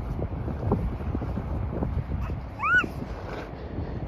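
Wind buffeting the microphone, a steady low rumble in gusts. About two and a half seconds in there is one short, high call that rises and falls.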